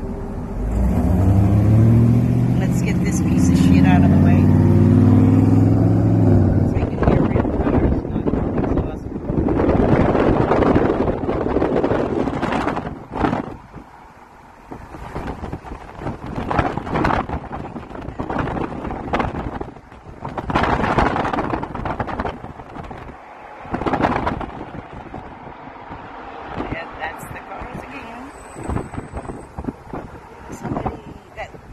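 A motor vehicle engine running loud and rising in pitch in steps as it accelerates from a stop, for about the first seven seconds. After that come road and traffic noise with irregular gusts of wind buffeting the microphone.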